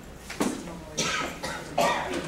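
A person coughing, in about three short bursts.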